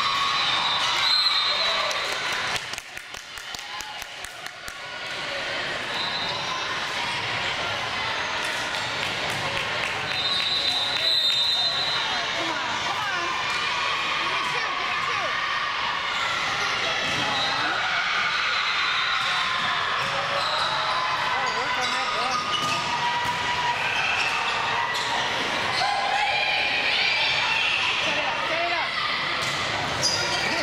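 Indoor volleyball play echoing in a large gym: repeated thuds of the ball being struck and hitting the floor, over a steady din of players' and spectators' voices. The sound drops away briefly about three seconds in, then the din returns.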